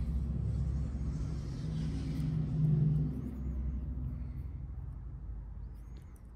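A low rumble that swells to its loudest about two to three seconds in, then slowly fades away.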